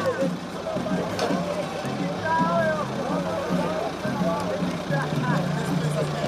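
Case backhoe loader's diesel engine running while its bucket digs into the soil, with voices around it.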